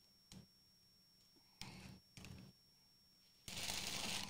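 Parchment paper being handled: a few brief rustles, then louder, steady crinkling near the end as the sheet is bunched up.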